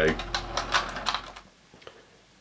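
Hexbug Nano vibrating robot bugs rattling on the plastic habitat, a rapid patter of light clicks that fades away after about a second and a half.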